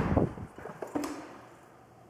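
An interior door into a garage being pushed open: a knock near the start that fades, a weaker knock about a second in, then quiet room tone.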